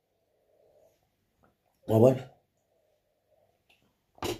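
A man's short wordless vocal sound, about half a second long, two seconds in, while drinking from a mug; otherwise near silence.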